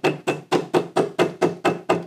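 Flat-faced hammer lightly tapping a glued leather belt and its liner against a stone bench top, about five quick even taps a second, each with a short ring. The taps press the contact-cement seam so the liner bonds to the belt.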